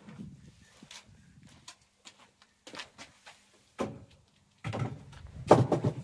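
Clunks and knocks of a van's removable rear bench seat being wrestled out of the load area and set down, ending in a loud thud near the end as it meets the ground.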